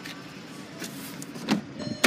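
Driver's door of a 2010 VW CC being opened: a clunk from the door handle and latch about one and a half seconds in, then a sharp click at the end.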